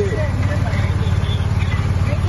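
A vehicle engine running steadily, a continuous low rumble, with people's voices over it.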